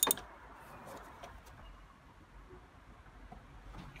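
A sharp crack as the oil filter housing cap breaks loose under a ratchet-driven cap-type oil filter wrench, followed by faint low background noise with a few light ticks.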